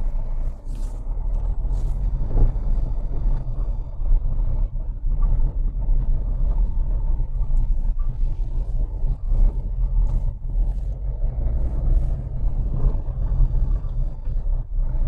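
Car driving slowly over a rough, wet street, heard from inside the cabin: a steady low rumble of engine and tyres, with a few light knocks near the start.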